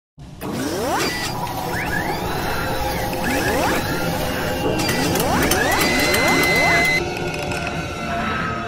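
Sound effects for an animated logo intro: synthetic robotic servo whines that sweep up in pitch several times, with mechanical clicks and ratcheting over a low rumble. The sound changes abruptly about seven seconds in.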